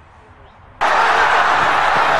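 A sudden loud burst of even rushing noise, about a second and a half long, that cuts in and cuts off abruptly.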